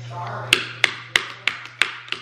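Wooden chopsticks tapped repeatedly against a plastic plate: five sharp clicks about three a second, starting about half a second in.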